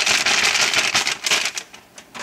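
Rapid crinkling and rattling of a paper packet of bass strings being handled and opened, a busy run of small crackles that fades away near the end.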